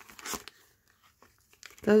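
Clear plastic packet of novelty buttons crinkling briefly in the hand, a couple of short crinkles in the first half-second, then quiet.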